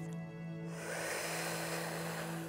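A long hissing in-breath drawn in through the mouth over the tongue, the inhale of the yoga cooling breath (sitali pranayama). It starts about two-thirds of a second in, over soft, steady background music.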